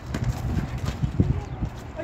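Quick, irregular low thuds from a pickup basketball game on an outdoor concrete court: players' running footsteps and the ball bouncing, with faint shouts from the players.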